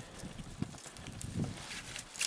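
Slow footsteps of boots on the wooden planks of a footbridge: a few soft, hollow knocks spaced a little under a second apart.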